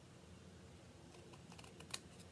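Near silence with a few faint clicks and one sharper snip just before the end: small ribbon scissors trimming the tail of a satin ribbon.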